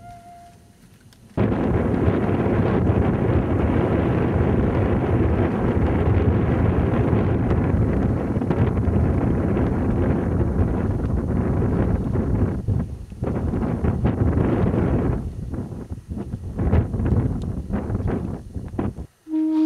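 Wind buffeting the microphone: a heavy low rumble that starts abruptly about a second and a half in and holds steady, then turns gusty and broken over the last few seconds.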